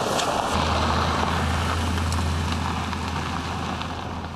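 BMW X5 SUV driving: steady engine and road noise, with a low drone that comes in about half a second in.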